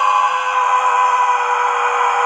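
A person's voice holding one long, loud, high-pitched yell that sinks slightly in pitch.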